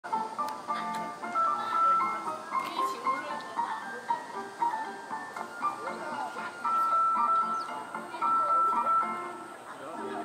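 A simple melody of held single notes stepping up and down in pitch, with people's voices faint underneath.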